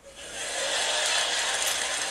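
Stand-up comedy audience applauding after a punchline, swelling up within the first half second and then holding steady.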